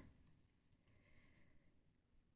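Near silence: faint room tone, with a couple of very faint ticks about halfway through.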